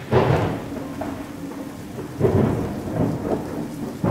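Steady rain with rolls of thunder, swelling loudest at the start and again about two seconds in.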